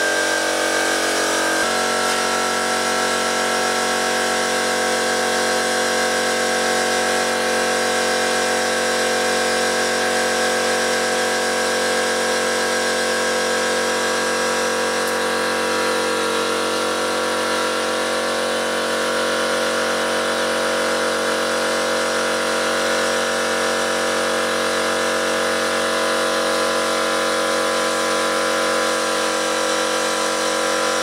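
Air compressor running steadily while a tractor's front tyre is inflated through an air-line chuck on the valve. Its steady note shifts slightly about two seconds in.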